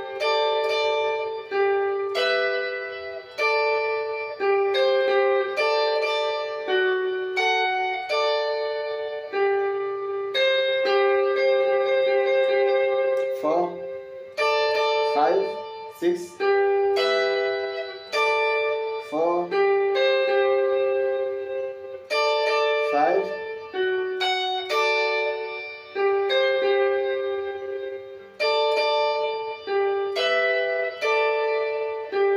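Clean-toned Fender electric guitar playing a seben (soukous) lead melody: a steady run of quick plucked single notes in repeating phrases, with several fast upward slides in the middle.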